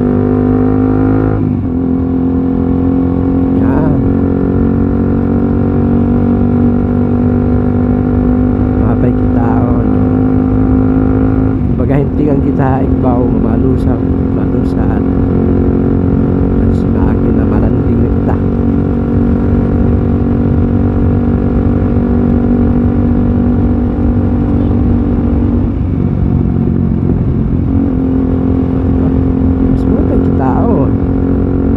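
Motorcycle engine running steadily at cruising speed. Its note climbs slightly at the start, steps down about a second and a half in, and holds an even hum for the rest of the ride.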